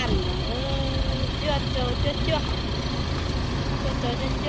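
White passenger van driving off and moving away down the road, its engine a low steady rumble under a person talking.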